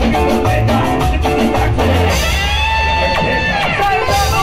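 Live band playing amplified dance music with drum kit, bass and electric guitar; about halfway through the drumbeat drops out, leaving a held note that bends in pitch.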